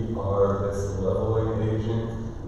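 Speech only: a man preaching a sermon, his voice drawn out and chant-like.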